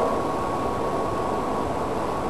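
Steady, even background noise, a hiss with a faint unchanging tone in it, and no speech.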